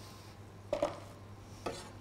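A few light knocks of a kitchen knife against a plastic cutting board as chopped spring onion is gathered up.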